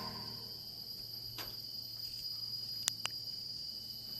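Insects in tropical forest give a steady, faint high-pitched drone. A few sharp clicks come about halfway through and twice in quick succession near three seconds.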